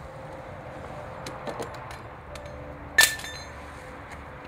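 A single sharp clink with a brief ringing tail about three seconds in, preceded by a few fainter ticks, over a low steady background hiss.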